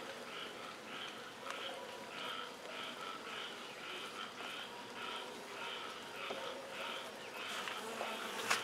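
Faint, steady hum of honey bees on a frame lifted out of an open nuc hive, with a faint chirp repeating about three to four times a second.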